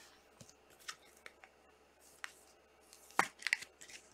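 Trading cards in clear plastic sleeves being handled: a few soft scattered clicks and crinkles of plastic, the loudest cluster about three seconds in.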